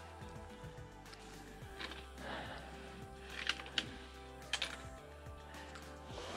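Quiet background music, with a few sharp clicks and scuffs about halfway through.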